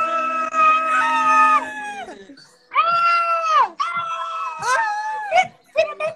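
Young men's voices letting out long, drawn-out yells of greeting, two voices overlapping at first, each held a second or more and dropping in pitch at the end; after a brief gap about two and a half seconds in, more yells follow, getting shorter toward the end.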